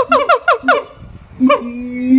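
Siamang calling, its throat sac swollen: a quick run of about six falling barks, then a single bark and a long, low, steady note near the end.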